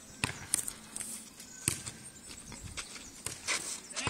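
Football tennis rally on clay: a handful of separate thuds of the ball being kicked and bouncing, the loudest about half a second in, with players' footsteps on the clay.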